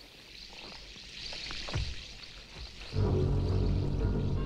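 Movie-trailer soundtrack: a hissing wash of noise builds, then about three seconds in a loud, low sustained music chord comes in.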